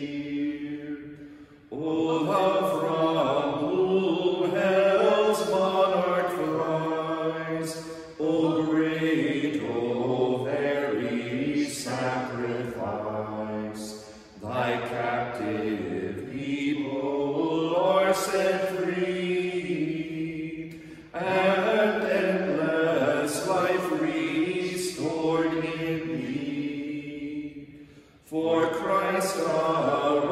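Men chanting the Vespers office unaccompanied, in four sung phrases of about six seconds each, with a short breath between phrases.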